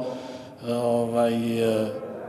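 A man's drawn-out hesitation sound, a held "eeh" on one steady low pitch, starting about half a second in and lasting about a second and a half.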